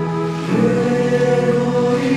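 Choral music: voices holding sustained chords, moving to a new chord about half a second in.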